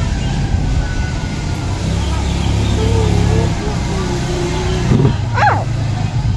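A motor vehicle's engine going past on the road, a low sound that swells in the middle seconds and fades about five seconds in. A short high call follows near the end.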